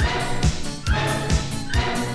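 Electronic dance music from a DJ's turntable mix: a steady kick drum a little over twice a second under a repeating synth figure that slides upward.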